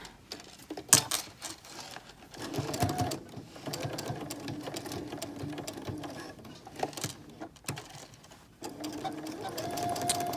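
Domestic sewing machine stitching a seam across fabric, running at a steady speed for several seconds and stopping near the end. A sharp click comes about a second in, before the machine starts.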